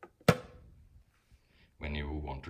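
A single sharp plastic click about a third of a second in as the water filter pitcher's plastic lid is pressed shut, with a short faint ring after it.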